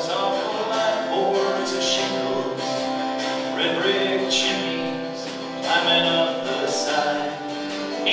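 A live band playing a song: guitars and singing voices.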